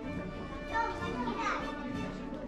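Young children's voices calling out and chattering, with orchestral background music running underneath.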